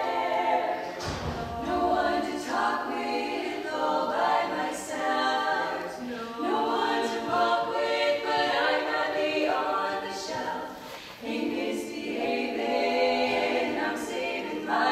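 Female barbershop quartet singing a cappella in four-part close harmony, holding chords in phrases with brief breaks between them.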